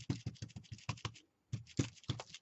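Rapid dabbing taps of a small ink or paint dauber bottle through a mesh stencil onto a cardboard jigsaw piece, about eight taps a second, with a brief pause about a second and a half in before the taps resume.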